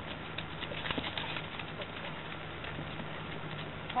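Irregular faint clicks and taps, thickest in the first second and a half, over a steady low hum.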